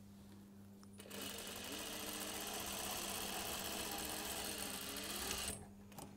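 Industrial lockstitch sewing machine stitching a seam through cashmere fabric. It starts about a second in and runs steadily for about four seconds, its pitch rising as it gathers speed and dropping as it slows, then stops a little after five seconds in.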